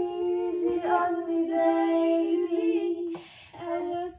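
A woman singing long, held notes into a studio microphone, practising the second-voice harmony line. The note breaks off briefly about a second in and again near the end.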